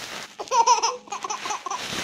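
Baby laughing, starting with a high-pitched squeal about half a second in, then a run of quick laugh pulses.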